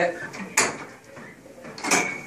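Metal clunks of a cable functional trainer's pulley carriages being moved up their columns and locked with the adjustment pins: two sharp knocks about a second apart, the second ringing briefly.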